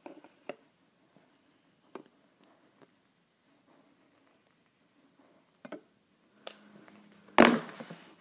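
A handheld lighter being used to light a row of shot glasses: a few faint, scattered clicks and handling sounds over quiet room tone. Near the end comes a single loud, short burst of noise.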